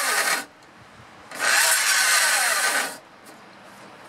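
Yellow cordless drill running into a cedar 2x4 frame in two bursts, the second about a second and a half long, its motor whine rising and then sagging in pitch under load. The battery is running down.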